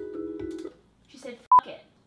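A steady electronic tone that stops under a second in, a faint voice, then one short, sharp beep about a second and a half in.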